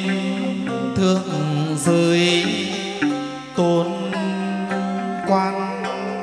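Chầu văn ritual music in an instrumental passage between sung verses: a plucked moon lute (đàn nguyệt) plays held and re-struck notes, with a few sharp attacks.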